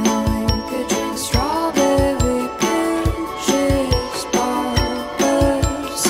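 Background music: a tinkling, bell-like melody over sustained notes and a beat of low thumps.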